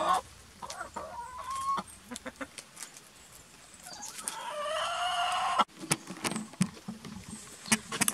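Hens clucking while they peck at and tear broccoli leaves, with a few short calls in the first two seconds and one longer, drawn-out call about four seconds in. Scattered sharp clicks run through it.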